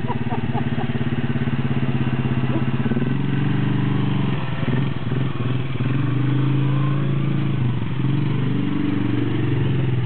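Polaris ATV (four-wheeler) engine running close by, holding a steady pitch for about three seconds and then rising and falling several times as its speed changes.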